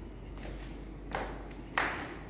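Footsteps on a tiled floor: two short slaps, about a second in and again near the end, over a low steady hum.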